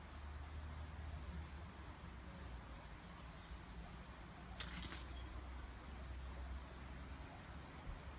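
Faint steady low rumble, broken about halfway by a quick run of sharp clicks lasting under half a second.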